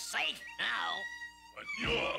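Cartoon soundtrack music and effects: quick falling whistle-like glides, then a thin, steady high tone held for about a second, with music picking up again near the end.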